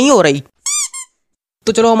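Two quick high-pitched squeaks, a cartoon sound effect, each arching briefly in pitch, about a third of a second apart, just under a second in.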